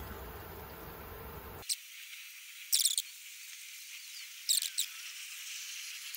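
A glass stirring rod spreading linseed-oil paint over cardboard. Faint hiss at first, then three short, high squeaky scrapes a second or two apart.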